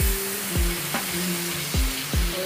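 Butter sizzling on a hot tawa as it melts under a spatula, a steady frying hiss, over background music with a beat of a little under two strokes a second.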